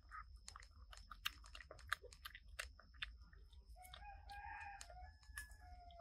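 A rooster crowing once, a call of about two seconds that starts near the middle and tails off downward, over the steady small wet clicks of young macaques chewing jackfruit.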